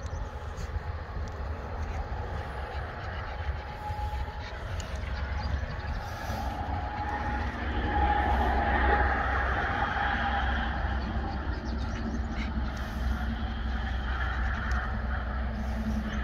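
Distant road traffic under a steady deep rumble, with one vehicle passing louder about halfway through.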